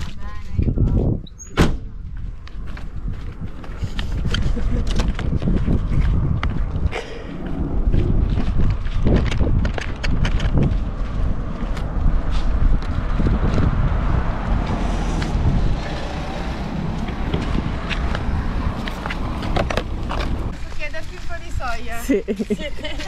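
Crinkling and crackling of a thin plastic food packet handled while walking, many short crackles over a steady low rumble.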